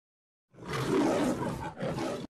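Animal roar in the style of the MGM lion logo, in two growls: a long one starting about half a second in and a shorter one near the end.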